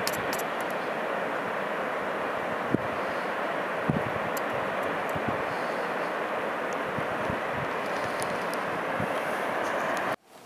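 Steady rushing of water from Raven Cliff Falls, a tall cascading waterfall, with a couple of soft bumps about three and four seconds in.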